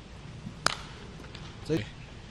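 A pitched baseball hitting the catcher's mitt: one sharp pop. A short voice follows about a second later.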